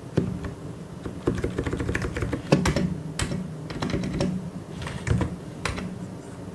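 Typing on a mechanical keyboard: uneven runs of keystrokes with short pauses between them, the loudest strokes about halfway through.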